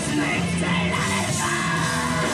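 Live rock band playing loud: distorted electric guitars and drums, with shouted vocals over them.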